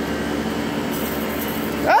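Steady rushing hiss with a low hum as a valve on a water heater's piping is opened and lets out pressure, the hiss brightening about a second in. A person's rising yelp starts near the end.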